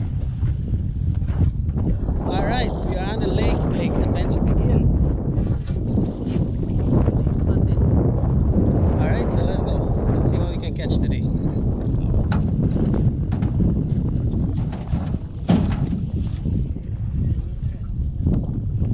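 Wind buffeting the microphone as a heavy, steady rumble on an open lake, with a sharp knock about fifteen seconds in.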